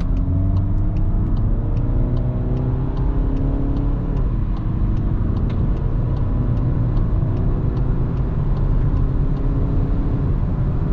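In-cabin sound of a Volkswagen Golf 8's 2.0 TDI four-cylinder diesel under hard acceleration from about 64 to 136 km/h. The engine note rises in repeated climbs through the gears over heavy road and tyre rumble.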